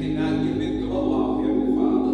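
Slow gospel hymn sung by voices in a church, with long-held notes over a steady sustained organ chord.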